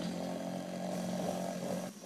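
A small engine running steadily at constant speed, with the spray jet hissing into the water. It cuts off abruptly near the end.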